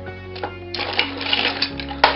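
Die-cast metal toy cars clicking and clattering against each other in a tub, a quick run of small clicks in the second half, over steady background music.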